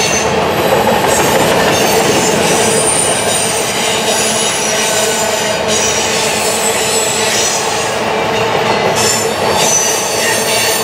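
Covered hopper cars of a freight train rolling past on a curve: a loud, steady rumble of steel wheels on rail, with thin high-pitched wheel squeals coming and going, strongest a few seconds in and again near the end.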